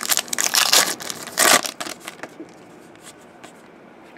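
Trading-card pack wrapper crinkling and cards rustling as a hockey card pack is opened and its cards are handled. A quick run of crackly rustles in the first two seconds, then only faint handling ticks.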